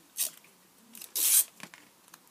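A sticker being peeled off its backing sheet: two short rasping bursts, the second longer and louder, followed by a couple of light clicks.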